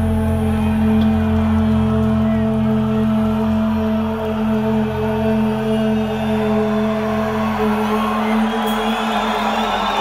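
Live rock band holding a steady chord through the concert PA, with crowd noise under it. The upper held notes die away in the last few seconds.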